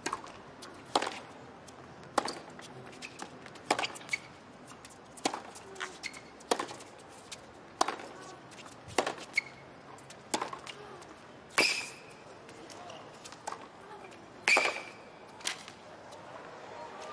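Tennis rally: the ball struck by the players' rackets in turn, about one hit every second and a half, with softer ball bounces and footwork sounds between the hits.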